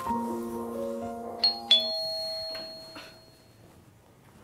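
Doorbell chiming a high two-note ding-dong about a second and a half in, the two strikes a quarter second apart and ringing out. Soft background music of held piano-like notes plays beneath and stops just after the chime.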